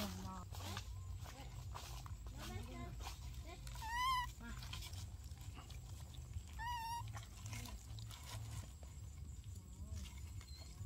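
Baby macaque giving two short, high, wavering coo calls, about four seconds in and again near seven seconds, over a low steady rumble.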